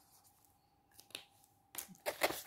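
Mostly quiet, with two short clicks a little after a second in and more near the end: plastic felt-tip marker caps being snapped shut and pulled off.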